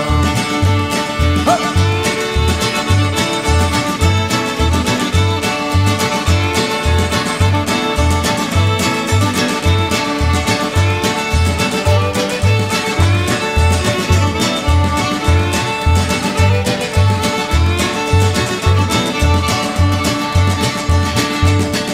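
Instrumental break of a country song: fiddle and guitar over a steady bass beat that alternates between two notes, about two beats a second.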